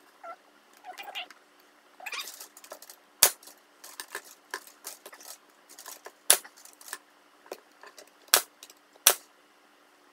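Bostitch 18-gauge pneumatic brad nailer firing one-inch brads to tack crown molding onto a bookcase: four sharp shots, one about three seconds in, one near the middle and two close together near the end, with lighter clicks and rustling of the molding being positioned between them.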